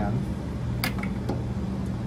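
A steady low room hum, with one sharp click a little under a second in and a fainter click about half a second later.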